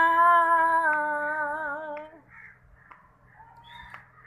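A woman singing unaccompanied, holding one long note of a Punjabi folk song that wavers slightly and breaks off about two seconds in. A quiet pause with only faint background sound follows.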